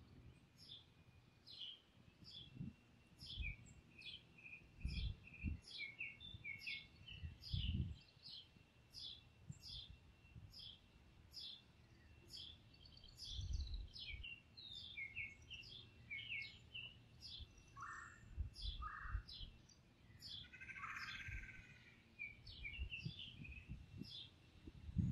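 Songbirds calling: one repeats a short high chirp about twice a second, while others add scattered shorter notes. Irregular low gusts of wind rumble on the microphone underneath.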